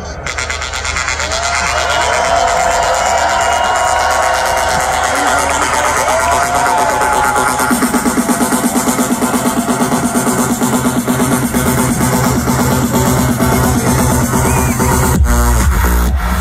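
Electronic dance music played loud over a festival sound system, heard from within the crowd. It builds with a fast, even pulsing beat that starts about halfway through, then breaks into heavy bass near the end.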